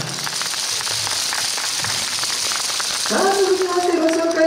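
Audience applauding, a steady patter of clapping after a yosakoi dance. About three seconds in, a voice calls out one long drawn-out shout.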